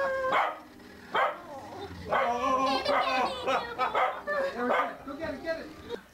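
A small dog barking, with a run of short barks from about two seconds in, mixed with people's voices.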